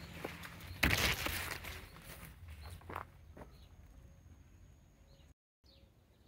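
Footsteps on a dirt garden path with leaves rustling, loudest about a second in and trailing off after about three seconds.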